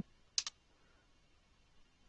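A single computer keyboard keystroke about half a second in, heard as a quick pair of clicks: the Enter key pressed to submit the last input value.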